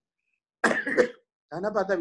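A person coughing briefly, a short burst with two sharp peaks about a second in, followed by speech.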